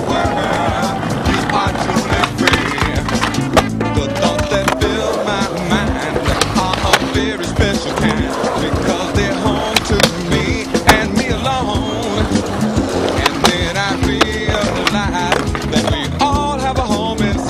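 A song playing with skateboard sounds over it: sharp clacks and impacts of the board, several scattered through it.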